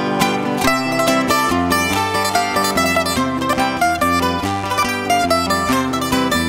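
Instrumental interlude of punto cubano played by a Canarian folk string ensemble: guitars strumming the accompaniment while flat-backed lutes pick a quick melody, over a double-bass line.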